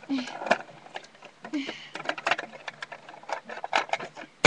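Light plastic clicks and taps, with some rustling, as a Littlest Pet Shop figure is handled at the door of a plastic toy playset and the door is swung open. A couple of brief vocal sounds come in near the start and again about one and a half seconds in.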